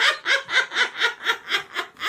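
A person laughing in a steady run of short 'ha' pulses, about four a second.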